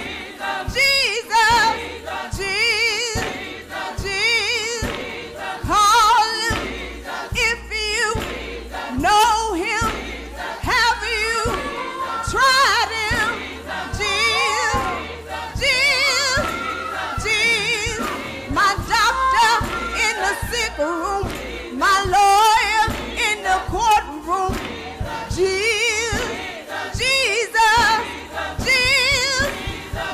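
Live gospel music: a woman sings lead into a microphone with a choir, the sung notes wavering in vibrato over a steady low bass.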